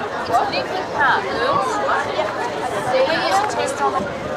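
Chatter of several people talking at once, their voices overlapping with no clear words.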